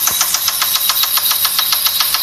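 Car engine running with a fast, even knocking, about ten knocks a second, over a steady low hum.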